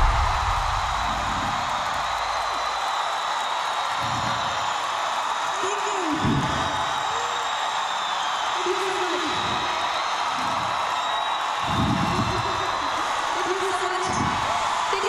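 A large concert crowd cheers and screams steadily after a song ends, with single whoops and shouts rising above it every few seconds. The last of the music dies away in the first couple of seconds.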